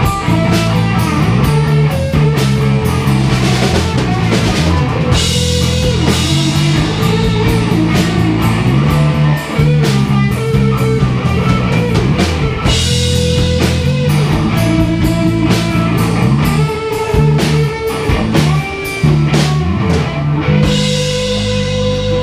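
Live rock band playing an instrumental passage: guitars over a drum kit, loud and steady. Near the end the drumming thins out and a chord rings on.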